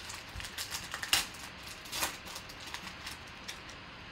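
A 2015 Panini Contenders football card pack being torn open and its wrapper crinkled as the cards are pulled out: a run of sharp crackles and clicks, the loudest about a second in and again at two seconds.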